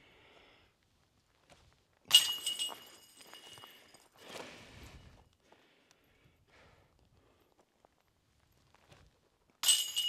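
A putted golf disc striking the hanging metal chains of a disc golf basket about two seconds in, the chains jingling and ringing as they settle over the next few seconds.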